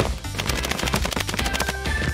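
Silicone pop-it fidget toy bubbles popping in a fast, rapid string of sharp pops, over background music.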